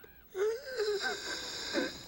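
A person's breathy, wheezing moan, about a second and a half long, starting about half a second in, its pitch wavering up and down.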